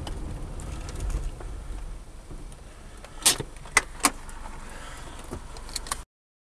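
Inside a moving car's cabin: a low engine and road rumble, heavier for the first two seconds and then easing off. A little past halfway come three sharp clicks in quick succession, with a few fainter ticks near the end.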